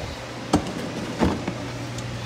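Kitchen extractor fan running with a steady low hum, with two short knocks, about half a second and a second and a quarter in.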